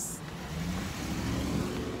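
A van driving past on the road, its engine and tyre rumble steady with the engine pitch rising slightly in the second half.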